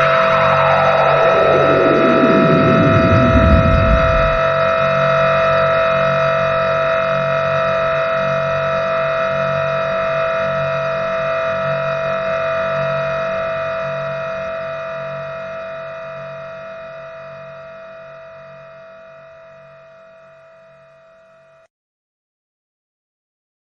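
Electronic synth drone ending a funk track: a tone sweeps steeply down in pitch over the first few seconds, over a cluster of steady held tones with a pulsing low hum beneath. It fades out slowly and cuts off shortly before the end.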